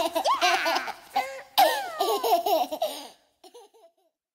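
High-pitched cartoon children's and babies' voices laughing and giggling, stopping about three seconds in.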